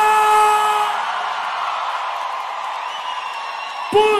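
A held sung note from the end of a sertanejo song cuts off about a second in. A steady rushing wash of noise follows and slowly fades, with a faint rising tone near the end, as the mix moves from one track to the next.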